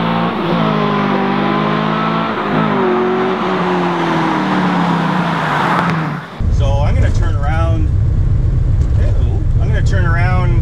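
LQ4 V8 in a 1981 Camaro Z28 pulling hard through the gears of its T-56 six-speed: the exhaust note climbs and dips at quick shifts about half a second and two and a half seconds in, then falls away steadily. About six seconds in it gives way to a low, steady V8 drone heard from inside the cabin.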